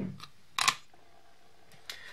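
Three light clicks as small stamping supplies, an ink pad and cardstock, are handled and set down on a craft table. The loudest click comes about half a second in.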